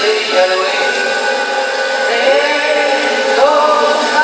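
Live folk band music: diatonic accordion, acoustic and electric guitars and drums playing together, with a gliding melody line near the middle. It is thin, with almost no deep bass.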